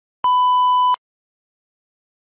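A single steady electronic beep, under a second long, that starts and stops abruptly.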